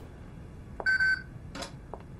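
A short electronic beep, one steady tone lasting about a third of a second, about a second in, followed by a brief soft click.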